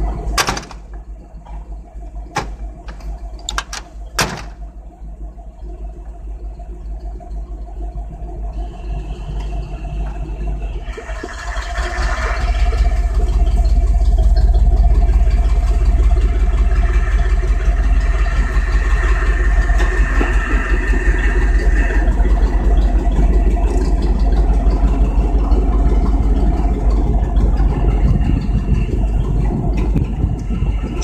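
A vehicle's engine running quietly, then revving up about eleven seconds in and staying loud with a heavy low rumble as the vehicle drives off; a few sharp clicks near the start.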